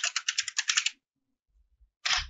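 Fast typing on a computer keyboard, about ten keystrokes a second, stopping about a second in.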